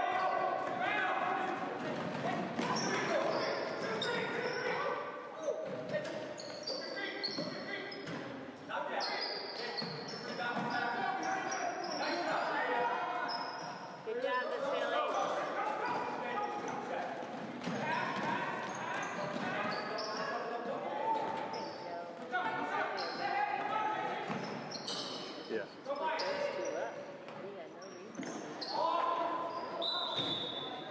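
Basketball bouncing on a hardwood gym floor during game play, ringing in a large hall, with people's voices talking and calling throughout.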